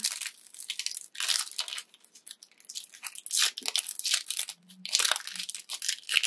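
Crinkly plastic sticker packet being picked at and worked open by hand: irregular crackling and crunching of the wrapper, in short scratchy bursts.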